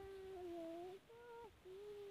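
Three faint, voice-like calls, each held at a steady pitch: the first about a second long, then two shorter ones at slightly different pitches.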